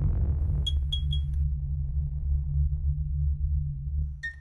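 Electronic logo-sting sound design: a deep, steady low drone, with four quick, high, sonar-like pings about a second in.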